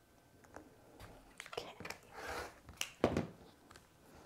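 Rotary cutter slicing through fabric along an acrylic quilting ruler, a short swish about halfway through, trimming the edge of a pieced block straight. Light clicks and taps of the ruler and cutter on the cutting mat come before and after it.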